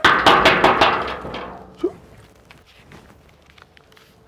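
Hard, rapid banging on a gate: a loud burst of many knocks with ringing that fades out within about a second and a half, then a few faint scattered taps.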